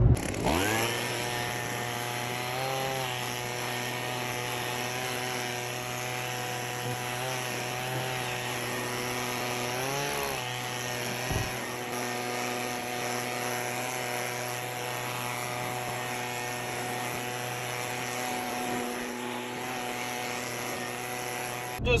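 A motor-driven gutter-cleaning tool running steadily, worked through a long extension tube along a leaf-filled roof gutter; its pitch wavers briefly a couple of times.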